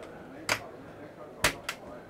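Plastic door-lock clip on a Dometic fridge freezer being worked by hand: three sharp clicks, one about half a second in and two close together near the end.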